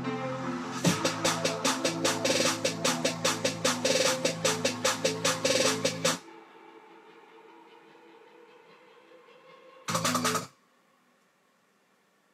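Future bass track playing back from the studio speakers: sustained synth chords with a snare roll of about five hits a second over them, cutting off suddenly about six seconds in. A short burst of the chords comes back briefly near ten seconds.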